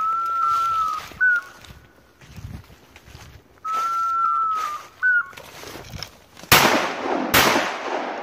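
A high, whistle-like tone sounds twice, each time held for about a second and followed by a short chirp. Then two shotgun shots are fired at a woodcock, under a second apart, much louder than the whistling.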